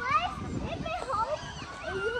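High children's voices singing without words, their pitch gliding up and down in short rising and falling phrases.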